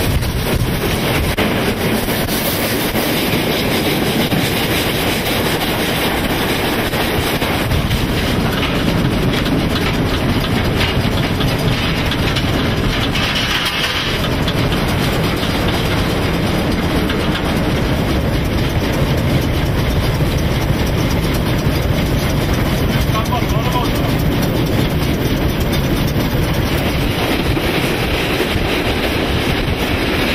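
Steam locomotive running along the line, a steady loud rumble of wheels on the rails heard close up from the engine.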